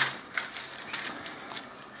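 Tracing paper being shifted and pressed flat by hand on a work surface: faint papery rustles with a few light ticks.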